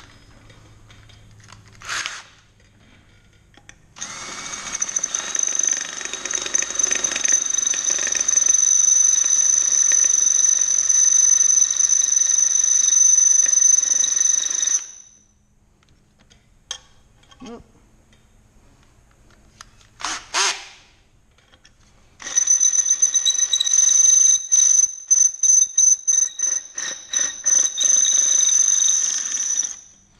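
Cordless drill boring into the aluminium of an ATV clutch side cover, with a steady high motor whine. It gives a short burst about two seconds in, runs for about ten seconds from four seconds in, gives another short burst around twenty seconds, then runs again from a little past twenty-two seconds, breaking off and restarting many times in quick succession.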